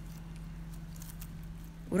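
Faint rustles and a few soft clicks of plastic-gloved hands arranging food in a pot, over a steady low hum.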